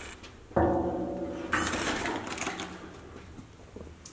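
A door creaking on its hinges as it is pulled open. The creak is pitched, starts suddenly about half a second in and lasts about a second, followed by a fading scrape.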